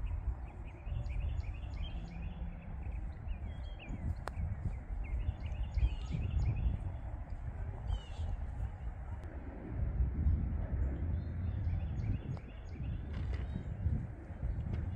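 Strong wind buffeting the microphone in a steady low rumble, with small birds chirping again and again throughout.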